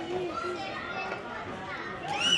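Children's voices calling out and chattering, one high voice wavering up and down and trailing off shortly after the start.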